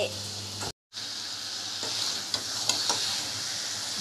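Potato chunks in spice paste sizzling in a hot metal pan while a spatula stirs them, with light scrapes and taps against the pan. The sound cuts out briefly about a second in.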